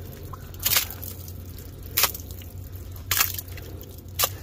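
Three short wet scrapes as a hand pushes soaked soybean chaff and muck across the metal floor of a combine's bean head, over a steady low hum.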